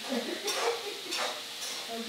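Chopped bitter gourd (karela) pieces being squeezed and crushed by hand over a steel plate to press out their juice: a few brief wet squelches and crackles, roughly one every half second.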